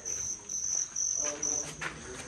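Crickets chirping at night in a steady pulsing trill, about two long chirps a second.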